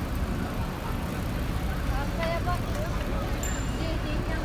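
Outdoor road noise: a steady low rumble of traffic and wind, with faint voices of people nearby about halfway through.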